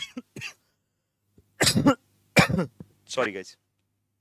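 A man coughing and clearing his throat: three short bursts in the second half.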